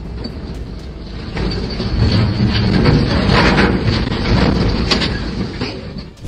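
A timber cargo of logs sliding and tumbling off a vessel's deck into the water: a rumble of rolling, knocking logs with splashing, building about a second and a half in and loudest in the middle.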